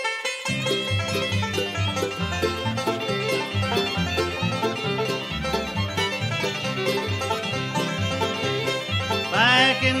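Bluegrass band instrumental intro: banjo, fiddle and guitar over a bass line, starting abruptly after silence at the very beginning. A voice begins singing right at the end.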